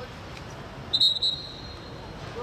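Referee's pea whistle blown once, a short trilling blast about a second in.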